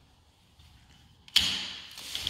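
Sliding balcony screen door knocking in its frame about a second and a half in, followed by a short rumble of it rolling in its track.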